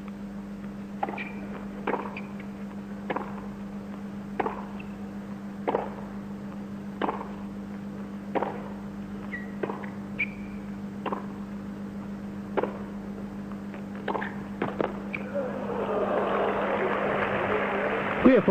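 Tennis ball struck back and forth by rackets in a hard-court rally, a sharp pock about every second and a half, with a few quicker hits near the end. From about fifteen seconds in, crowd noise swells as a passing shot catches the net cord.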